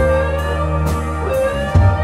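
A live rock band playing an instrumental passage: bass and sustained keyboard and organ chords, a lead line that glides in pitch, and drum and cymbal hits a little under once a second.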